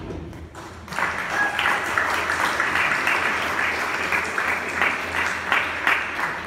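A church congregation applauding. The clapping starts about a second in and carries on steadily.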